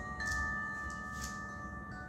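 Background music of sustained, bell-like chime notes, a few tones held and changing slowly.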